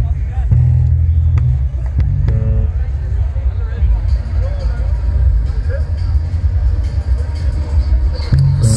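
A live band's electric bass holding low notes between songs, with a few short instrument notes and faint crowd voices over a low rumble.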